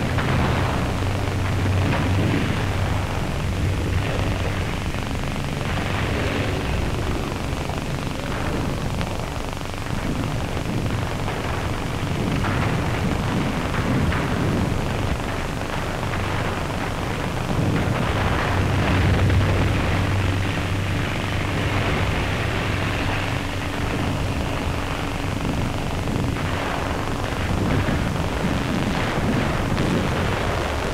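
Steady drone of assault-boat outboard motors under a constant heavy hiss from an old film soundtrack, swelling a little louder about two-thirds of the way through.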